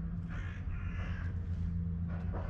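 A bird cawing twice in quick succession, two harsh calls each under half a second long, over a steady low hum.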